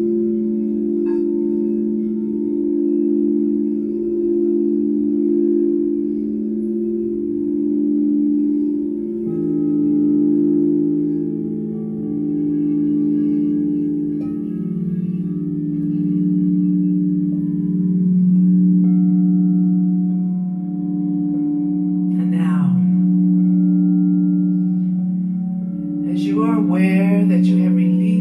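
Several large frosted crystal singing bowls ringing together in a sustained drone with a slow, wavering pulse. A lower-pitched bowl joins about a third of the way in and another about halfway through, deepening the chord.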